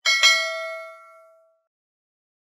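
A notification-bell ding sound effect: two quick strikes a fraction of a second apart, ringing out and fading away within about a second and a half.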